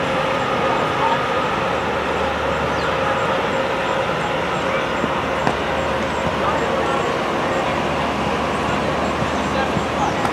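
Steady outdoor background noise with indistinct distant voices, with no clear separate events standing out.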